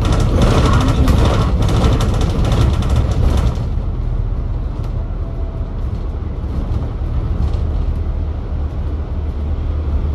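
Volvo B5TL double-decker bus on the move, heard from the upper deck: its four-cylinder diesel engine and the road make a steady low rumble. For the first three and a half seconds a louder hiss with fine rattling sits over it, then it settles to the rumble alone.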